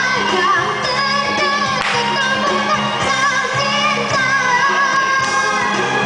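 A young girl singing into a handheld microphone over backing music, her voice amplified through a PA, with a wavering vibrato on held notes.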